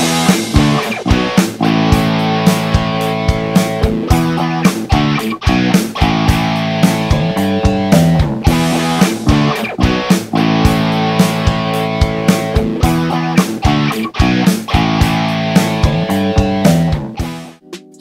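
Playback of a home-recorded multitrack song in GarageBand: a GarageBand drummer track with bass and guitar parts playing together to a steady beat. The music stops shortly before the end.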